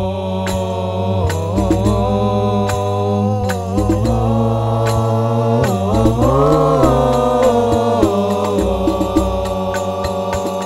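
Sholawat Al-Banjari performance: male voices chanting a long, drawn-out Arabic devotional melody that climbs in pitch about six seconds in, with terbang frame drums struck throughout.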